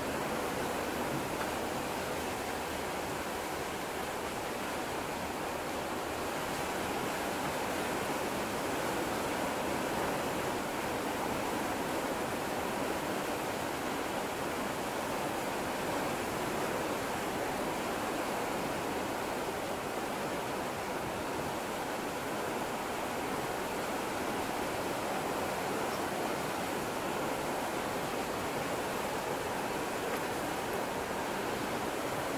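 Steady, even rushing noise aboard the coastal ship MS Finnmarken under way, the sound of water and air moving past the ship, with a faint low hum underneath.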